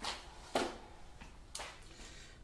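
A few brief handling noises, short clicks and rustles: a metal icing cutter taken from its card-and-plastic packaging and set down on rolled icing, three sharp sounds about a second apart.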